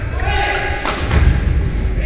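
Badminton play: heavy thuds of a player's footwork and lunge on the court floor, with one sharp crack of a racket striking the shuttlecock a little under a second in.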